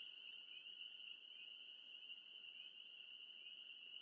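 Near silence except for a faint, steady, high-pitched insect chorus, typical of crickets.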